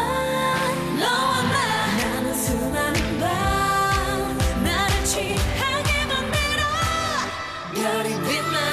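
Female singers performing a K-pop song in Korean over a backing track with a steady bass line, the loudness dipping briefly shortly before the end.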